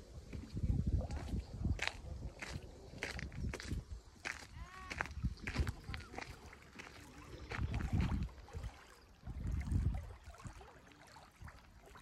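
Small lake waves lapping on a sandy, stony shore, with scattered crunching footsteps and uneven gusts of wind on the microphone.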